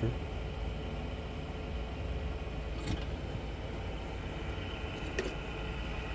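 Steady low mechanical rumble, with two faint clicks about three and five seconds in.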